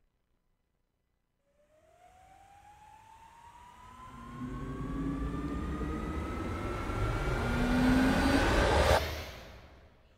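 Logo-intro sound effect: a riser that swells from faint to loud, its tone gliding steadily upward over about seven seconds above a deep rumble, then breaks off sharply about nine seconds in and fades out.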